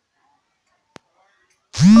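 Near silence with one faint click about a second in. Near the end comes a loud, cartoonish voice effect that slides up and down in pitch twice, as the notes of a music jingle begin.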